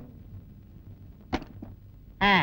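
A single sharp knock about a second and a half in, followed by a fainter tap, over a quiet low hum.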